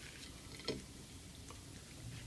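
Leaves being pulled off a cooked artichoke by hand over a plate: faint soft ticks, the clearest one about two thirds of a second in.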